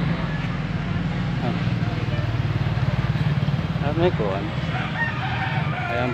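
A rooster crowing in the second half, over the steady low hum of vehicles on the road.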